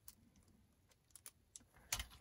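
Faint, scattered small plastic clicks of LEGO click-hinge bricks being handled, with a sharper click near the end.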